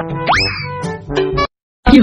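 A cartoon sound effect, a quick upward glide in pitch, over a short playful music cue. Both stop abruptly about a second and a half in.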